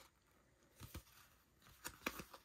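Near silence, with a few faint soft ticks of baseball cards being shifted in the hands.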